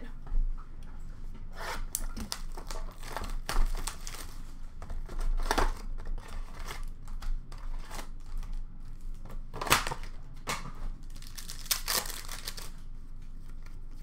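Upper Deck hockey card blaster box being opened by hand and its packs torn open: irregular crinkling, rustling and tearing of cardboard and pack wrappers, with a few sharper crackles.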